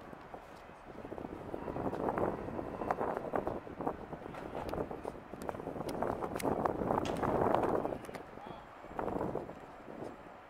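Indistinct voices talking, with a scatter of sharp clicks throughout.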